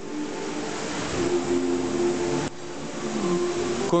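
Steady rushing ambient noise of a large mall display hall, with faint steady low tones beneath it; the rushing drops suddenly about halfway through.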